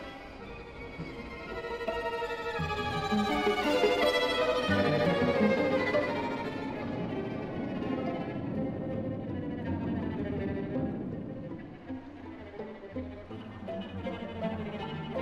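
Classical string music played by bowed strings, a violin leading over cello, thinning out and growing quieter near the end.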